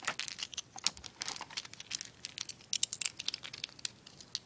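Handling noise from a phone being carried: irregular rustling and many small clicks as a hand and clothing brush against the microphone.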